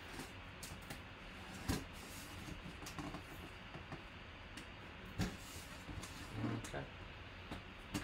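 A folding knife blade slitting packing tape along the seams of a cardboard box, with scattered scrapes and small taps. Two louder clicks come about two seconds in and about five seconds in.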